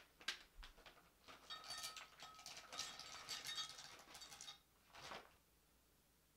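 Salted caramel candy melt wafers poured from a bag into a glass Pyrex measuring cup, a faint run of small clicks and clatter against the glass lasting about three seconds.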